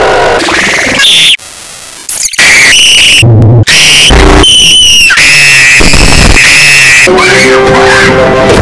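Loud, clipped and distorted screaming in a high-pitched boy's voice, cut into abrupt edited chunks that stop and restart several times, with brief drop-outs in between.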